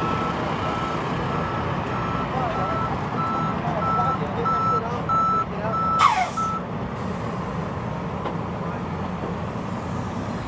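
A vehicle's reversing alarm beeps steadily about twice a second and stops after about six and a half seconds. Behind it are outdoor crowd noise and faint voices, with a brief falling whoosh about six seconds in.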